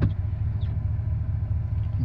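Steady low rumble of a car heard from inside its cabin, typical of the engine idling while the car sits still.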